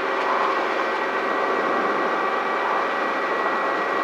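Light piston helicopter's engine and rotor heard inside the cockpit, a steady drone with a few constant whining tones, while the helicopter hovers low on its final approach to touchdown.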